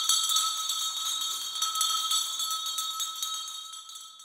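A bell-like musical sting: a cluster of high, sustained chiming tones with a light jingling shimmer, fading away near the end.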